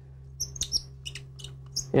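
Short, high squeaks and clicks, about six of them, from small pen-kit parts being turned and fitted together by hand on a turned wooden pen blank, over a steady low hum.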